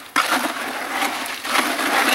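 Wet concrete mix being churned and scraped by hand inside a plastic five-gallon bucket, a gritty continuous scraping that comes in uneven surges.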